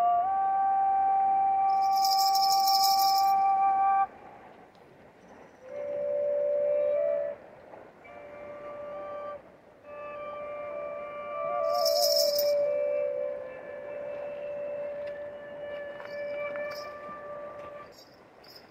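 Dvoyanka, a Bulgarian double flute, playing long held notes: a loud high note breaks off sharply about four seconds in, then softer, lower notes are held with short pauses between them. Two short bursts of shaken rattling come in over the flute.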